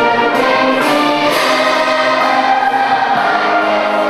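A choir singing with a full orchestra of strings and woodwinds in live concert, holding sustained chords, with a higher held line growing stronger about halfway through.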